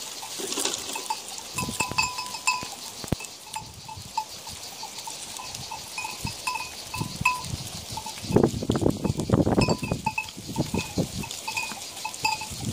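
Bells on a grazing goat herd clinking irregularly, with goat sounds close by that are loudest about eight to ten seconds in.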